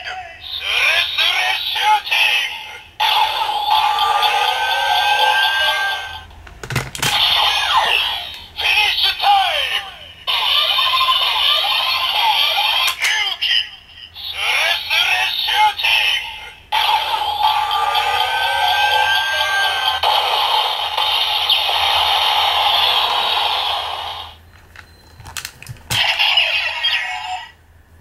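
A DX Zikan Girade toy blaster playing its electronic finisher sequences through its small speaker: recorded voice calls, music and effect sounds, each run ending in a sharp crack. It plays first with the Ex-Aid Ride Watch fitted, then, about halfway through, again with the Ryuki Ride Watch.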